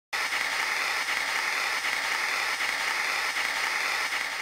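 Analogue TV static: a steady hiss of white noise that goes with a screen of snow.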